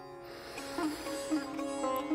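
Soft instrumental background music: a steady drone with a few plucked string notes.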